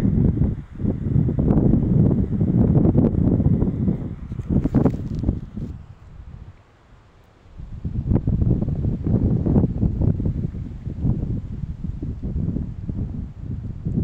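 Wind buffeting a phone's microphone: a loud, low, gusty noise that drops away for about a second and a half midway, then picks up again.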